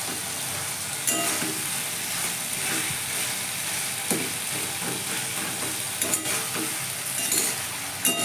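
Cut vegetables sizzling in hot oil in a steel kadai, being stirred with a metal spatula that scrapes against the pan now and then.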